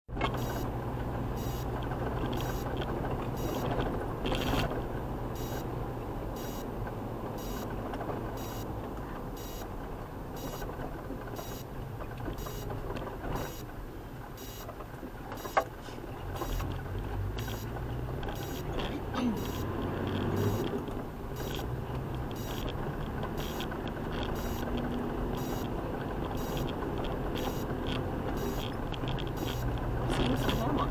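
Toyota 4x4 driving on a dirt road, heard from inside the cab: a steady engine drone and road rumble. A high beep repeats a little more than once a second, and there is a single sharp knock about halfway through.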